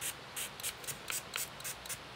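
A mini makeup setting-spray bottle pumped in quick, faint, hissy puffs, about four a second.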